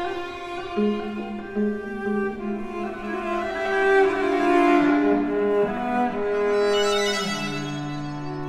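Cello and viola of a string quartet bowing slow, sustained notes that move from one held pitch to the next, with a lower note entering about seven seconds in.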